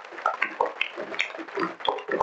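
Crowd noise in a large hall: scattered murmured voices and movement sounds with a few sharp clicks, irregular and without any steady rhythm, as a group of students moves on and off the stage.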